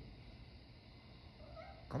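A cat gives a faint, short meow rising in pitch near the end, just before a man's voice starts.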